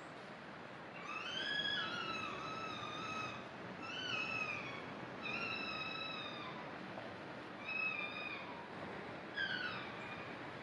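Ezo red foxes squabbling over territory: a series of about five high, wavering, whine-like cries, each under two seconds long and sliding down in pitch at the end.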